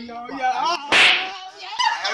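A single sharp, loud slap about a second in, as a man is struck and knocked to the ground, amid excited voices.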